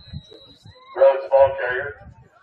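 Voices shout a loud, short cheer in three drawn-out syllables about a second in, pitched and held like a chant.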